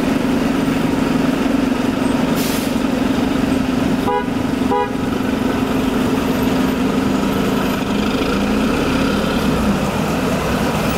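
Engine of a CNG-powered New York City transit bus running with a steady drone as the bus pulls away from the curb. Two short horn toots come about four and five seconds in.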